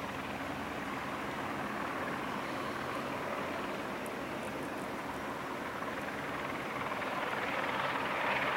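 Helibras AS350 B3 Esquilo helicopter hover-taxiing low: a steady rotor and turbine sound that grows louder near the end.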